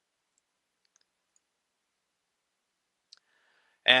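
Near silence broken by a single short click about three seconds in, from the computer mouse used to select faces in the CAD model. A man starts speaking right at the end.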